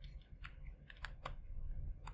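Several faint, irregularly spaced light clicks and taps over a low steady rumble.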